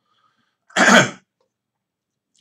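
A man coughs once, short and sharp, about two-thirds of a second in.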